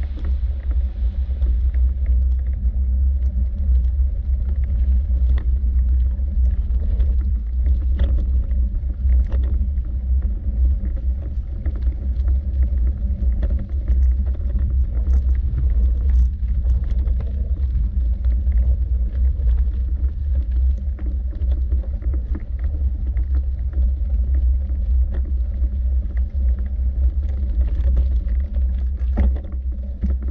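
A steady, loud low rumble with faint, scattered clicks over it.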